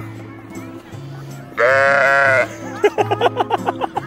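A black-faced sheep bleats once, loud and wavering, for just under a second about one and a half seconds in, followed near the end by a fast stuttering run of short cries, about eight a second. Background music plays throughout.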